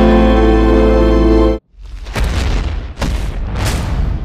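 Background music holding a sustained chord over a deep bass that cuts off suddenly about a second and a half in, followed by a channel logo sting: three whooshing sweeps with booms, the last one fading out.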